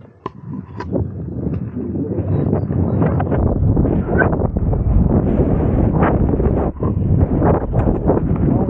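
Mountain bike rolling fast over a dirt-jump track: tyres on dirt and mulch, with knocks and rattles from the bike and wind rushing over the action camera's microphones. It builds up over the first few seconds and is loud from about three and a half seconds in.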